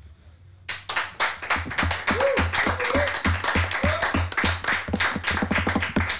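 A small group clapping, starting suddenly about a second in and going on densely and irregularly, with three short whoops in the middle.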